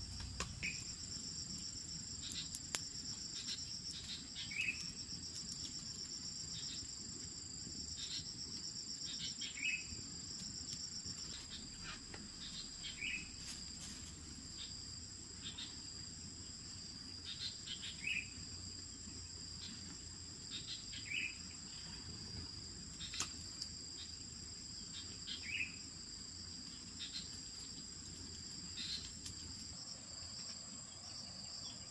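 A steady, high-pitched chorus of crickets or similar insects, with a short call repeating every three to five seconds and occasional sharp clicks.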